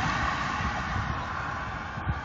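Wind buffeting a phone's microphone on a moving bicycle, an irregular low rumble, over the road noise of a car driving away, which slowly fades.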